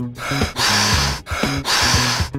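A cartoon character's breaths: one long hissing breath and then two shorter ones, as he blows into the valve of a flat inflatable to blow it up.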